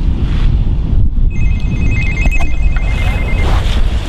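A mobile phone ringing: an electronic two-tone trilling ringtone for about two seconds, starting about a second in. Beneath it runs a steady low rumble of passing road traffic.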